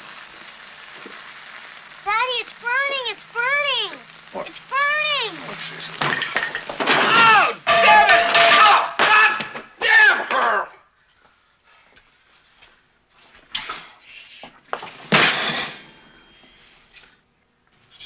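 French toast frying and sizzling in a pan while a man gives four short rising-and-falling yelps, then shouts loudly. A single sharp, loud crash comes about fifteen seconds in.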